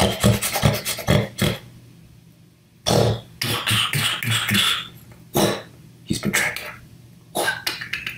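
A man making creature sound effects with his mouth: groups of short, sharp snorting and sniffing huffs for a T-Rex sniffing around. There is a quick run of strokes at the start, a pause, a longer burst about three seconds in, then shorter bursts near the end.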